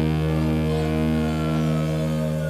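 Rock music: a distorted electric guitar chord held and ringing steadily, with a faint falling tone sliding down through the upper range near the end.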